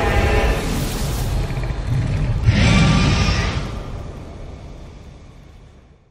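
Logo sound effect: a low rumbling, fiery whoosh with an animal-like roar. It swells to its loudest about two and a half seconds in, then fades out.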